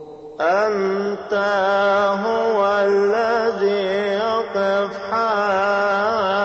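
Coptic liturgical chant sung by a male voice in long held notes with wavering, melismatic ornaments. It starts after a brief pause about half a second in, with short breaks for breath near one and five seconds.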